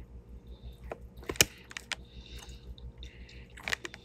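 Close-up chewing of food, with wet mouth clicks and smacks, the sharpest about a second and a half in and a cluster near the end, and soft breaths between them.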